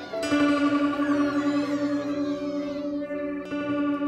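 Background music of sustained instrumental notes, with a new chord struck just after the start and held.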